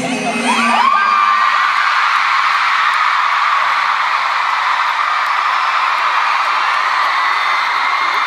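Large arena crowd cheering and screaming at the end of an acoustic song. The last sung and guitar notes die away in the first second, then a dense wall of high, shrill screams holds steady to the end.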